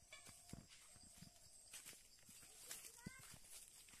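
Faint footsteps and rustling of plants underfoot, irregular soft knocks on a path through grass and crops. A brief faint rising call is heard about three seconds in.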